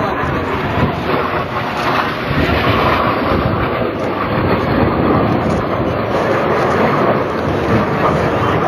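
Military jet aircraft flying low overhead, its engine noise a loud, steady roar.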